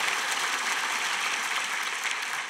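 Audience applauding, a steady wash of many hands clapping.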